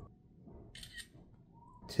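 iPad's camera-shutter screenshot sound: one short shutter click a little before a second in.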